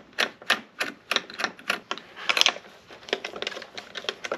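Ratcheting socket driver clicking in quick repeated strokes, about three clicks a second, as a bolt on a fish finder mounting bracket is backed out; the clicks come closer together and fainter near the end.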